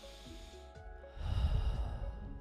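A man breathing in deeply through his nose, then breathing out heavily close to the microphone, about a second in, over soft background music.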